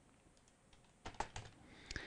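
Faint computer keyboard and mouse clicks: a quick run of about five or six keystrokes starting about halfway through, after a quiet first second.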